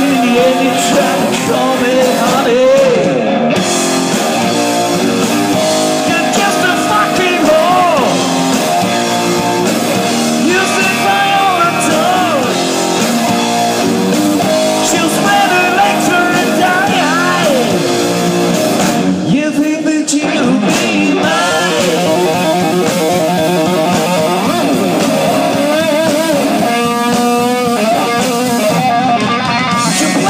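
Heavy metal band playing live: a male singer's vocals over electric guitar, bass guitar and drums, loud and steady throughout.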